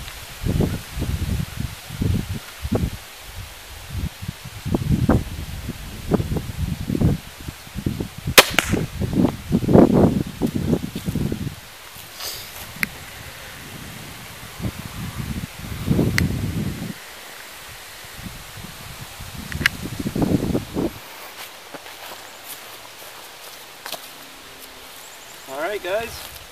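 A Parker Tomahawk crossbow fires a bolt with a single sharp snap about eight seconds in, amid irregular low rumbling of wind and handling noise on the microphone.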